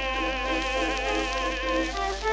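Early acoustic-era 78 rpm recording of a countertenor ballad with small orchestra: a held note with a thin, buzzy tone. A steady low hum runs beneath it.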